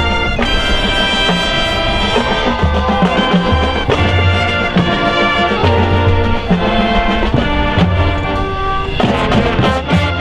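Marching band playing live: brass chords held over low bass notes, with a sharp accented entrance about half a second in.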